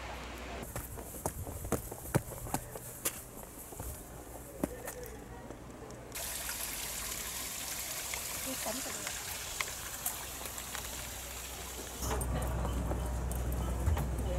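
A small forest creek trickling: a steady running-water hiss that sets in about six seconds in and lasts about six seconds. Before it come scattered sharp clicks, and near the end a louder low hum takes over.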